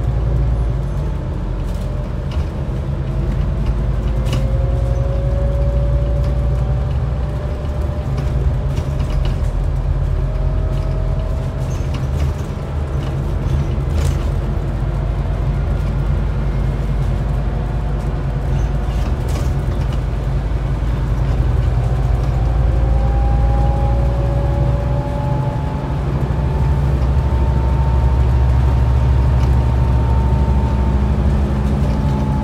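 Scania N280UD double-decker bus with a compressed-biogas engine on the move, heard from inside the passenger cabin. There is a steady heavy low engine drone, with faint whines that climb slowly in pitch as the bus gathers speed, and occasional small rattles.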